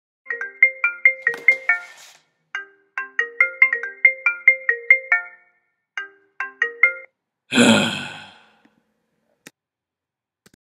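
A phone alarm ringtone playing a bright marimba-like melody of quick struck notes, in three phrases with short gaps, cut off about seven seconds in. Right after it comes the loudest sound, a rough burst lasting about a second, and near the end a single click.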